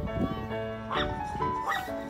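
Background music playing a steady melody, over which a dog gives short high rising yelps, about a second in and again near the end.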